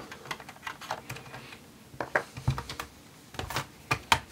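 Plastic snap clips of a laptop's bottom cover clicking as the base panel is pulled up and away from the chassis: scattered small clicks and snaps, the loudest about two, two and a half and three and a half seconds in.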